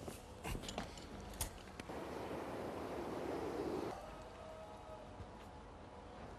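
Faint fabric rustling for about two seconds, after a few light clicks and knocks.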